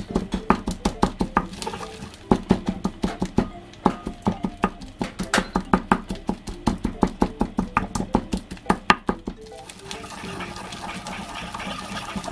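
Wooden pestle pounding natto in a ridged earthenware suribachi: quick, even knocks about four or five a second. Near the end the knocking gives way to a steady grinding as the sticky beans are worked round the bowl.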